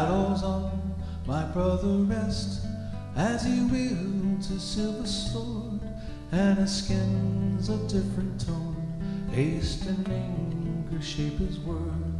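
Acoustic guitar strummed slowly, a chord every second or two over sustained low notes, with an electric guitar playing alongside: the instrumental introduction of a gentle folk song.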